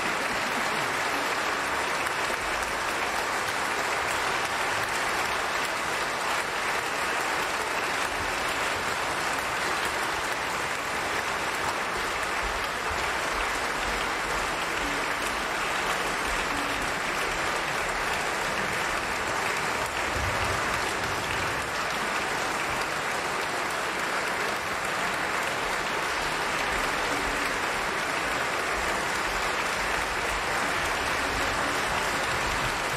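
Concert audience applauding steadily, with no break.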